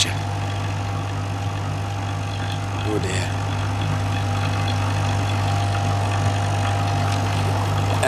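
Electric vacuum pump running with a steady low hum, evacuating a sealed jar of room-temperature water to very low pressure.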